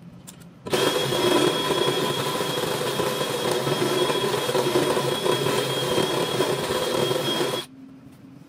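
Cordless drill spinning a deburring bit in a freshly drilled hole in a heavy-duty steel enclosure. The motor whines steadily while the bit scrapes the metal edge. It starts just under a second in and stops shortly before the end.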